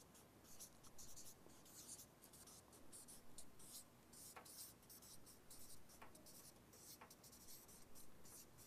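Faint felt-tip marker strokes squeaking and scratching on flip-chart paper as words are written out.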